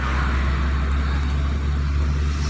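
Hyundai hatchback's engine running steadily in second gear with road noise, heard from inside the cabin while the car speeds up.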